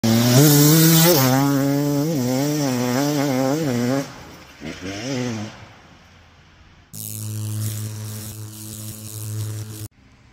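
Dirt bike engine running hard on a trail, its pitch rising and falling with the throttle for about four seconds, with one more short rev near five seconds as it fades. A steadier engine note starts abruptly about seven seconds in and cuts off sharply just before the end.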